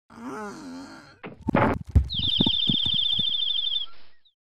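Cartoon sound effects: a short, wavering character cry, then a rising rush that ends in a thud about two seconds in, followed by a fast, high-pitched rattling trill lasting almost two seconds.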